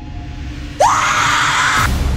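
A woman screams, starting suddenly a little under a second in with a rising pitch, then cut off abruptly just before the end, over a low rumbling music bed.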